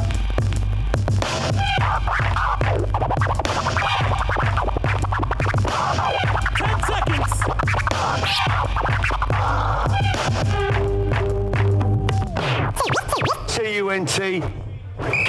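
Turntablist scratching on vinyl turntables over a hip-hop beat: quick back-and-forth record scratches and cut-up samples over a steady bass line. Near the end the routine breaks up and a tone glides downward.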